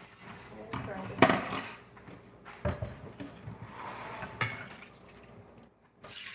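Kitchen dishes and cookware clattering: one sharp knock about a second in, then a few lighter knocks spread through the rest.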